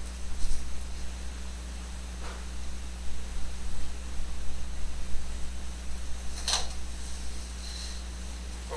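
A steady low hum and hiss, with a few faint clicks and light rustles of handling: one about half a second in, one about two seconds in, and a sharper one about six and a half seconds in.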